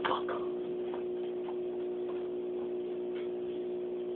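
Steady motor hum from aquarium equipment, with a few faint irregular ticks over it.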